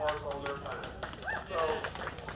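A man speaking into a handheld microphone, with a few sharp clicks in between.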